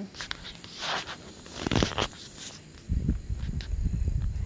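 Footsteps on old wooden barn floorboards: scattered scuffs and knocks first, then a run of heavier low thuds from about three seconds in.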